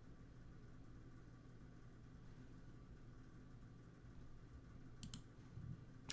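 Near silence: room tone with a low steady hum, broken about five seconds in by a quick pair of sharp clicks.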